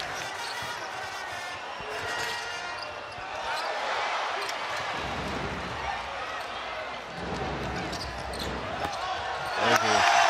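A basketball being dribbled on a hardwood court under the steady hubbub of an arena crowd.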